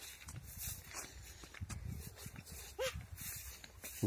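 Faint footsteps on a dry, grassy dirt track, with light rustling. A single short, high call that rises and falls comes about three seconds in.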